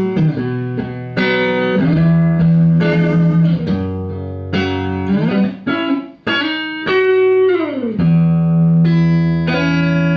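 Stratocaster-style electric guitar with Seymour Duncan pickups, played through an amplifier: a phrase of ringing chords and single notes, with notes gliding down in pitch about seven seconds in.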